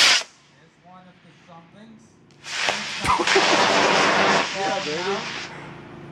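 Model rocket motors firing: the liftoff roar of the booster motor cuts off just after the start. About two and a half seconds in, a second roar of the air-started motors lighting in flight begins, with a sharp crack near the three-second mark, and it fades out after about three seconds.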